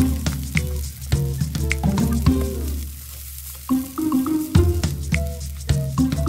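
Vegetable fried rice sizzling in a frying pan as a wooden spoon stirs and scrapes through it, with light clicks of the spoon against the pan. Background music plays over it, with a brief quieter dip a little after the middle.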